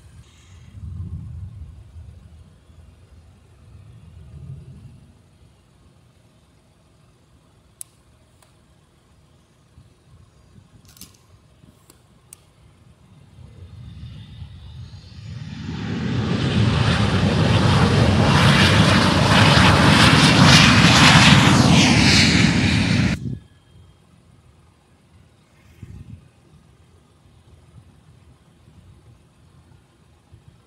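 Jet airliner's engines on a takeoff run: the noise swells over a few seconds, stays loud for about seven seconds, then cuts off suddenly.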